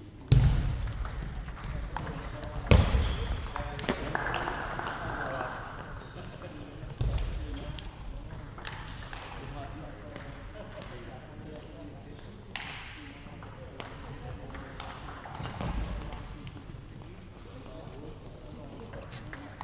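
Table tennis balls clicking off bats and tables, with several tables in play at once in a large hall, among people's voices. A few louder sudden sounds come in the first seven seconds.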